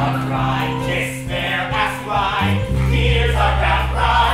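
A stage-musical cast singing together in chorus over instrumental accompaniment, with a held bass note that steps down lower about two and a half seconds in.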